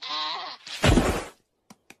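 A cartoon giraffe gives a short bleating call. A loud, rough burst of noise follows about half a second later and lasts under a second, then come a couple of faint clicks.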